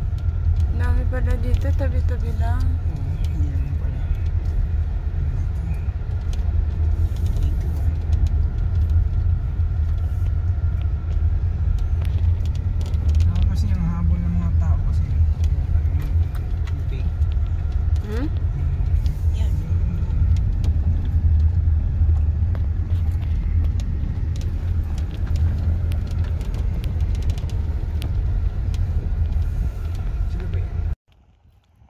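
Steady low rumble of a car's engine and tyres heard from inside the cabin while driving on a gravel road, with faint voices briefly in the background.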